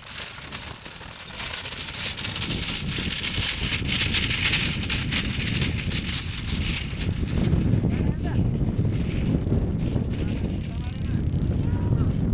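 A racing bullock cart drawn by a pair of Khillari bulls rattling and clattering over rough dirt as it runs past, the clatter strongest in the first few seconds. Wind rumbles on the microphone in the second half.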